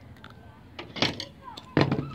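A few light, sharp clicks and taps from hands handling the crochet work, the loudest about a second in, then a woman begins speaking near the end.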